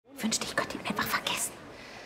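A person's voice speaking softly for about a second and a half, then low room tone.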